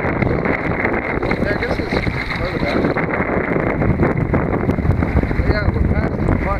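Steady, loud wind buffeting the microphone of a camera on a kayak's deck, with faint snatches of a voice underneath.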